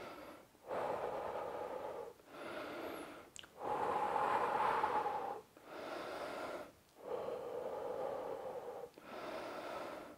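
A man breathing deeply and slowly in and out to recover after exertion and bring his heart rate down: about seven long audible breaths, each a second or two, with short pauses between.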